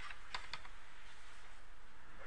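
Three quick keystrokes on a computer keyboard in the first half second, then only a faint steady hiss.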